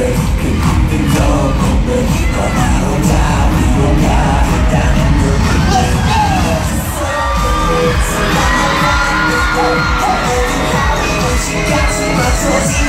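Loud live K-pop music through stadium speakers, with a large crowd of fans cheering and screaming over it. From about halfway, many wavering high voices from the crowd rise above the beat.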